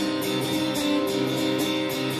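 Acoustic guitar strummed live in a steady rhythm, sustained chords ringing.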